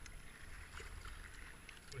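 Faint splashing of a kayak paddle working the water, with water moving along the hull and a low wind rumble on the microphone.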